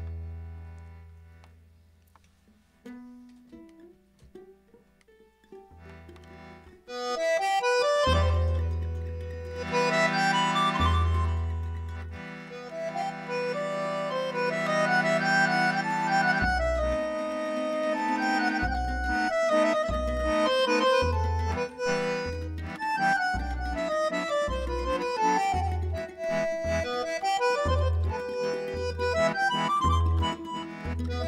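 Piano accordion and electric guitar playing a musette waltz. A few soft, low guitar notes open it, then about seven seconds in the accordion comes in loudly with the melody, and from about halfway a steady, rhythmic bass line runs underneath.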